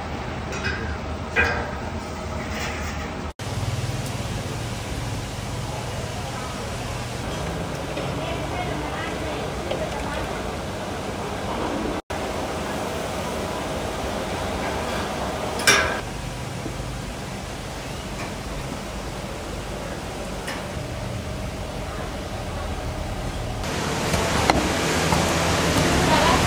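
Busy kitchen background noise with indistinct voices and a low hum, broken by a few sharp knocks. It gets louder and busier near the end.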